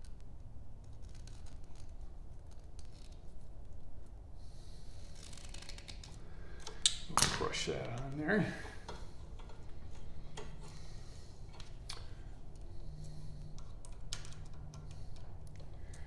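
Scattered clicks and snips of a hand wire crimper/stripper and of electrical wires and connectors being handled, over a steady low hum. A brief mumbled voice about seven seconds in.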